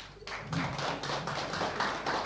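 Audience applauding, the clapping breaking out about a quarter of a second in and continuing as a dense patter.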